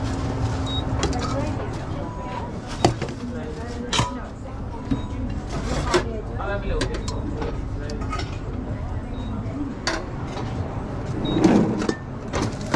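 Restaurant kitchen sound: a steady low hum with voices in the background, broken by a few sharp metallic clinks of a steel pan and serving spoon as tomato sauce is spooned into the pan.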